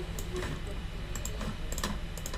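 A few scattered clicks of a Dell G3 17 laptop keyboard and a Logitech wireless mouse as drawing software is worked, the sharpest click near the end.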